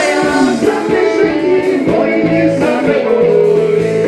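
Live folk-rock band playing: a woman singing over guitars, fiddle and drums.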